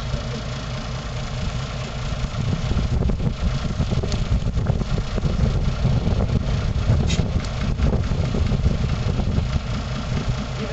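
Old dump truck's engine idling steadily with a low rumble.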